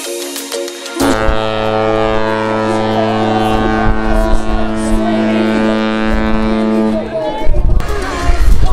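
Cruise ship horn sounding one long, deep, steady blast that starts about a second in and stops about seven seconds in. Music plays before and after it.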